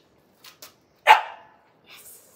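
A puppy barks once, a single short bark about a second in, with two faint clicks just before it.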